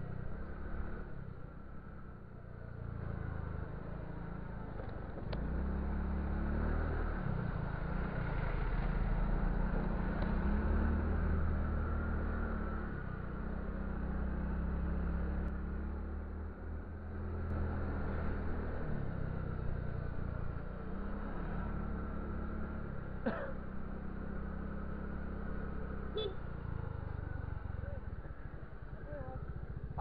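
Motor scooter being ridden on a road: a steady low engine and wind rumble that swells and eases with speed, loudest in the middle stretch. Two brief higher-pitched sounds come late on.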